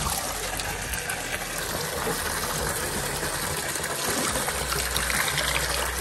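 Water pouring steadily from a tap into a bucket and splashing over onto the ground, a continuous rushing splash.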